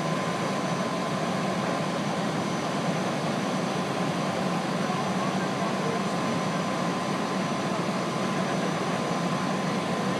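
Parked fire engine's engine running steadily close by: a constant, unchanging drone with a faint steady tone in it, and voices under it.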